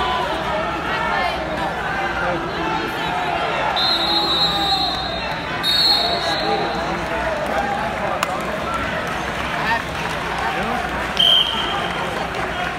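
Hubbub of many voices echoing in a large hall, with referee whistles: two long blasts around four and six seconds in, and a short, louder one near the end.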